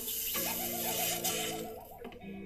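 Cartoon soundtrack effect played through a TV: a fast ratchet-like rattle over a few held low tones and a steady hiss, fading out near the end.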